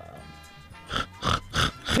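A man imitating a pig: four short grunts about a third of a second apart, starting about a second in, over faint background music.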